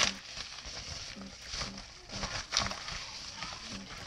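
A cardboard mailing package being torn open and its paper packaging rustled by hand, with a few short, sharp rips.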